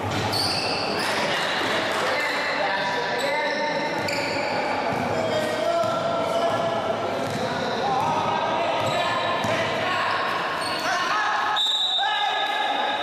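Live basketball game sounds: a basketball bouncing on a hardwood gym floor amid indistinct voices of players and onlookers, all echoing in a large hall.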